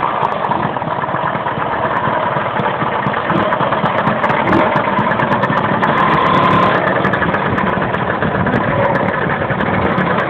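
Several Lambretta scooters' two-stroke engines running at low revs close by, a steady blended engine noise.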